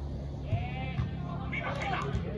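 Footballers shouting on the pitch, with a short rising-and-falling call and then a louder yell near the end. Two sharp thuds of a football being kicked come about half a second and a second in.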